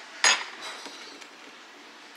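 A single short clatter of dishware or a utensil about a quarter of a second in, then faint room tone.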